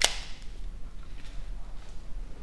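A single sharp snap, like a hard object knocked or clicked at a desk, right at the start and dying away within half a second.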